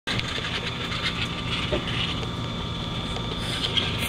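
A steady engine hum with a thin, steady high whine above it.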